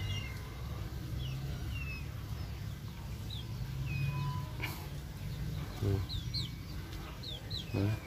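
Birds chirping: scattered short, high, falling chirps over a low steady hum, with a single click about halfway through.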